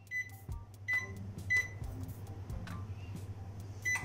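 Zanussi microwave oven's keypad beeping as its buttons are pressed. There are four short high beeps, three within the first second and a half and one near the end, with faint button clicks over a steady low hum.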